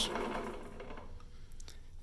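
Milling machine spindle motor running slowly and getting quieter as the speed knob is turned down. A couple of faint clicks come near the end.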